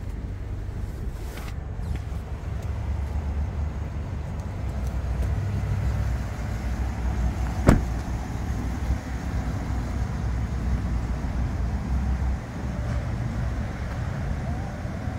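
A pickup truck door shutting once with a sharp thump about eight seconds in, the loudest sound here, over a steady low rumble.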